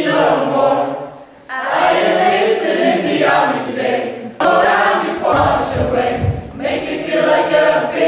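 A group of voices singing together in unison, a chorus of stage performers, in phrases broken by a brief pause about a second and a half in. There is a sharp click about halfway through and low thumps shortly after.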